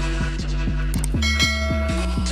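Background music with a steady beat. About a second in, a bright bell chime rings over it for under a second: the notification-bell sound of a subscribe-button animation.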